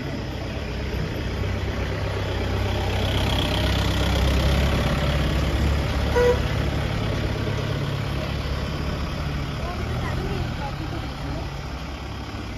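A small truck's engine running as it drives slowly past close by, growing louder to a peak around the middle and then fading away.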